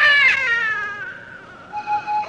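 A baby's wail that rises in pitch, peaks, then falls away and fades within about a second.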